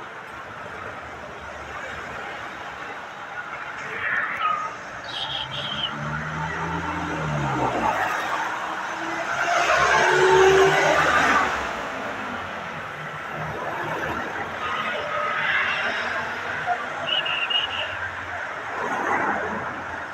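Street traffic: a pickup truck drives past close by, its engine and tyres swelling to a peak about ten seconds in and then fading, with another vehicle approaching near the end.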